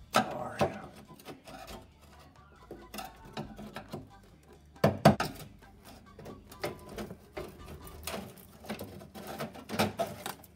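Hand tools (a hammer and a pry tool) knocking and scraping against a car's steel floor pan while a brake-line grommet is pried loose. There are sharp metallic knocks right at the start and a loudest single knock about five seconds in, with lighter clicks and scraping between.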